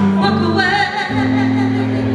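Female vocalist singing a slow soul-blues ballad with a live band; a held low chord comes in underneath about a second in.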